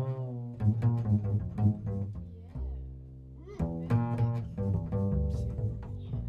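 Upright double bass played pizzicato: a run of plucked notes, with one longer note left ringing about halfway through before the plucking picks up again.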